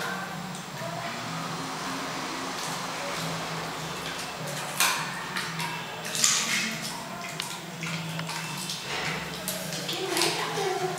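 Dog chewing chicken bones, with a few sharp crunches: the loudest about 5 and 6 seconds in, more near the end. A steady low hum and faint background music run underneath.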